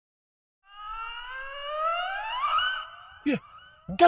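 A comic sound effect: a rising, wavering pitched tone of about two seconds that cuts off, followed by a short falling blip.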